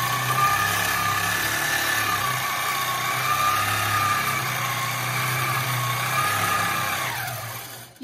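Handi Quilter Fusion longarm quilting machine stitching in precision (stitch-regulated) mode at 10 stitches per inch, a steady motor whine that wavers slightly in pitch as it is guided across the quilt. Near the end the whine falls in pitch and fades as the machine slows.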